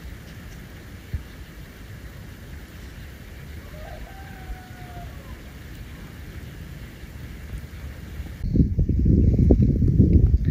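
A rooster crowing once, faintly, about four seconds in, over a low steady background noise. Near the end a much louder low rumbling noise sets in.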